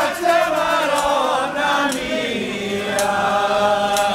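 Voices singing a traditional devotional folk song together, unaccompanied, on long held and wavering notes, with a few sharp clicks late on.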